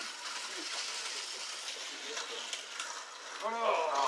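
Faint, steady high-pitched whirring of small electric slot cars running on the track, with a few light clicks; a voice starts near the end.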